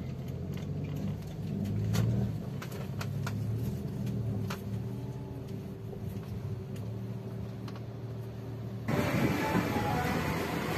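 A car's engine running, heard from inside the cabin as a steady low hum with a few faint clicks. Near the end it cuts off abruptly and louder background music takes over.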